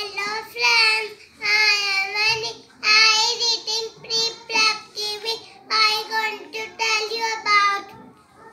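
A young child singing a short tune in a high voice, in a string of held phrases with short breaths between them, stopping just before the speech begins.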